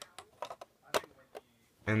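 Plastic Lego pieces clicking and knocking as a cover is fitted back onto a Lego engine by hand: several short, sharp clicks, the loudest about a second in.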